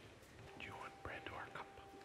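A man speaking softly, close to a whisper, over quiet background music with long held notes.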